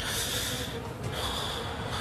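A person sighing, a heavy breath out in two stretches of about a second each.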